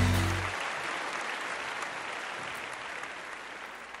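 Audience applauding, dying away gradually, while the last low chord of electric guitar music rings out in the first half second.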